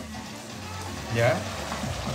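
A cup of boiled water poured onto a sofrito of onion, garlic, celery and salame frying in a pot, giving a steady sizzle and hiss as the water hits the hot pan.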